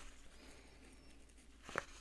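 Near silence with faint room tone, and a few faint short handling sounds near the end as a paper herb packet is moved.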